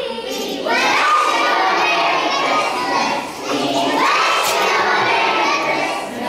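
A group of young children shouting together loudly in unison, in two long stretches, the first starting about a second in and the second near four seconds.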